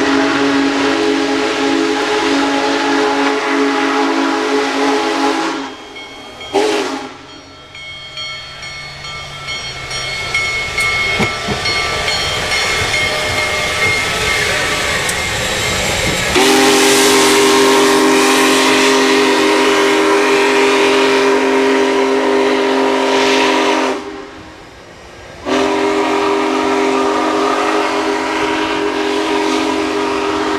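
Union Pacific Big Boy 4014's chime steam whistle blowing long chord blasts: one of about five seconds at the start and a short toot just after. Then the locomotive's hiss and running noise grow louder as it comes near. The whistle sounds again from about halfway through, in two long blasts with a short break between them.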